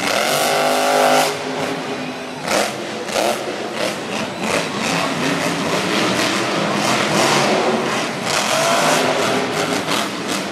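Grave Digger monster truck's supercharged V8 revving hard again and again, its pitch rising and falling, loudest in the first second and again near the end.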